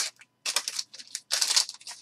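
Foil wrapper of a trading-card pack crinkling and tearing as it is pulled open by hand, in a few short bursts of rustling with brief pauses between.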